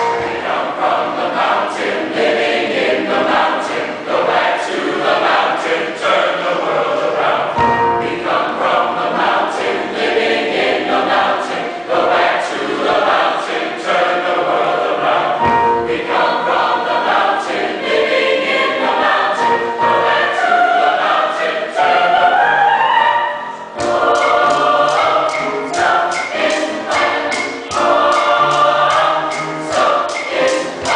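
A mixed choir singing in parts over a steady percussive beat, the beat dropping out briefly a little before the end.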